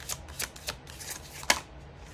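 A deck of cards being shuffled by hand: a few short, sharp card snaps, the loudest about one and a half seconds in.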